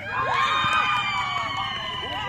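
A group of children shouting and cheering together: several long, held yells start at once and slowly fall in pitch, with other voices calling around them.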